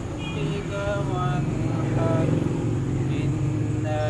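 A man's voice reciting the Quran in long, held melodic phrases, over a steady low rumble of road traffic.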